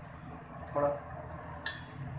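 Gas burner running with a steady low hum under a stainless-steel kadai of heating oil, and one sharp metallic clink near the end.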